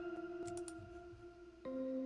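Keyboard part from a song mix playing sustained chords, moving to a new chord about one and a half seconds in.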